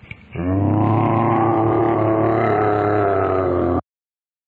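A bear roaring: one long, low, steady roar that starts about half a second in and cuts off abruptly near the end.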